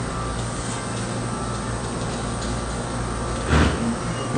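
A steady low hum of background noise, with one short bump about three and a half seconds in.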